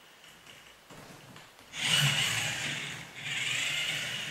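A balancing robot's two small geared motors whirring in two short spurts, about two seconds in and again about a second later, as they drive the wheels to keep the robot upright.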